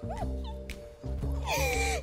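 Light comedic background music with held notes, and a young woman's high-pitched, wavering squeals of glee near the start and again near the end.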